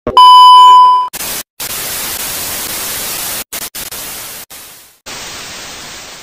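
Television test-card beep, a loud steady high tone lasting about a second, followed by the hiss of TV static that cuts out briefly several times.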